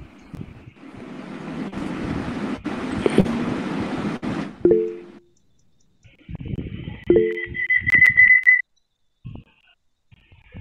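Noisy, garbled audio from a participant's microphone coming through a video call: a hiss with abrupt dropouts for a few seconds, a couple of short low tones, then a steady high-pitched whine that cuts off suddenly.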